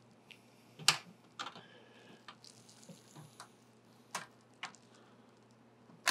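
Scattered light clicks and taps with faint scraping as a vertical GPU bracket is worked against the back of a PC case to snap its tabs into place. The sharpest click comes about a second in, with smaller ones at uneven intervals after it.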